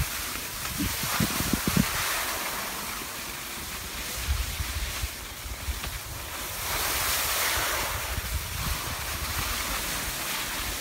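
Wind buffeting the microphone together with the hiss of skis sliding over packed snow, swelling twice as the skier turns; a few low knocks about a second in.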